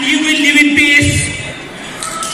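A man speaking into a microphone over a hall's PA system, his voice dropping away after about a second.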